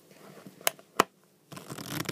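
Playing cards being riffle-shuffled on a tabletop in a table shuffle: two sharp clicks of the cards about two-thirds of a second and one second in, then a quick rapid flutter of cards riffling together in the last half second.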